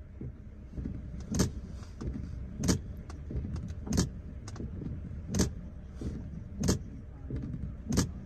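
Inside a car with the engine idling, a low steady rumble, while a sharp click repeats about every second and a quarter.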